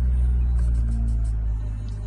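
Music playing from a car's built-in radio, carried by a deep, steady bass that gets a little quieter near the end.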